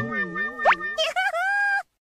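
Cartoon-style comic sound effects: a boing-like tone wobbling up and down in pitch, a quick rising whistle partway through, then a short held squeaky tone with a couple of pitch jumps that cuts off suddenly near the end.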